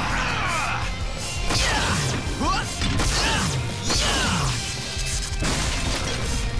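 Cartoon action soundtrack: music with layered sound effects of sweeping whooshes and several crashing impacts.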